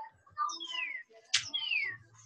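Two falling whistles, each about half a second long, with a sharp click between them.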